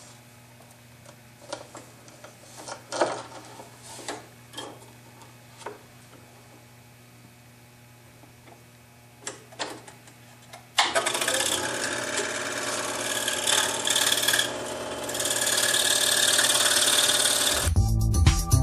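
A few light knocks and clicks as the plywood blank is handled and the blade is fitted, then a scroll saw switched on about eleven seconds in, running steadily as its fine jeweler's blade cuts quarter-inch plywood.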